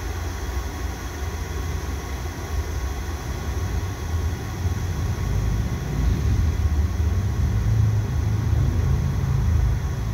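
Low, steady rumble of a train running on the line, growing louder in the second half.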